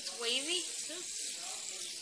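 A child's voice speaking indistinctly over a steady high hiss.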